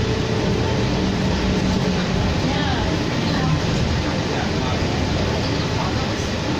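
Steady drone of a 2004 New Flyer D40LF diesel city bus, heard from inside the cabin while it is moving. A low engine hum drops away about halfway through.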